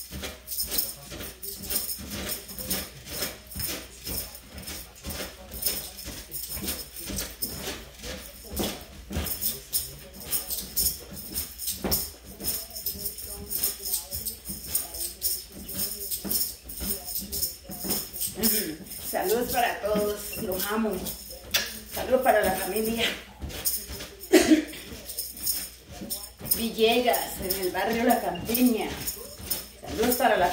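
Upbeat music carried by a fast, steady rattling percussion beat, with a voice coming in about two-thirds of the way through and again near the end.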